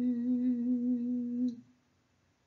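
A single voice holding the long closing note of a hymn, steady with a slight vibrato, which ends about one and a half seconds in.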